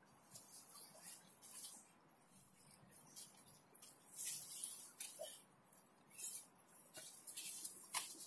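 Faint, irregular scuffs and swishes of feet stepping and sliding on artificial turf, with clothing rustling, during martial-arts partner drills.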